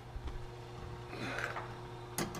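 Faint knocks and handling noise as a framing nailer and lumber are moved into place, with no nail fired, over a steady low hum.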